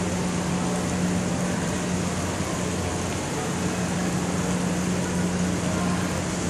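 Steady indoor background noise: an even hiss with a low, constant hum, unchanging throughout.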